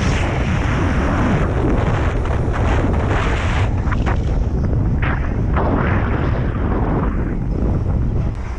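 Wind buffeting the microphone of a camera carried on a moving road bicycle: a loud, steady rushing rumble.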